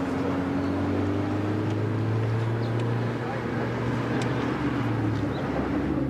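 Car engine running with a hum that rises slowly in pitch as the car picks up speed, then eases off about five seconds in.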